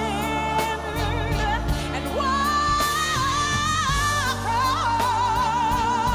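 A female gospel singer sings a slow ballad with a wide, even vibrato, holding one long high note in the middle, over steady instrumental backing.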